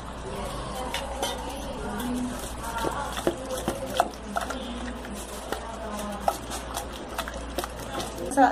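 A hand stirring thin besan (gram-flour) and water batter in a metal bowl: wet stirring with many small clicks throughout.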